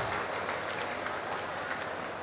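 Low, steady crowd noise from a rally audience, with faint scattered claps.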